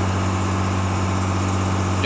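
Fishing boat's engine running steadily under way, a constant low hum, with the rush of water and wind along the hull.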